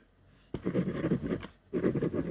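Ballpoint pen writing on white paper over a desk: quick scratchy strokes begin about half a second in, break off briefly, then start again near the end.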